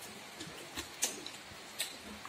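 Close-up eating sounds from chewing food by mouth: a few short, sharp clicks and smacks spread over the two seconds.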